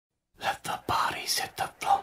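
Whispered speech in short breathy phrases, starting about a third of a second in.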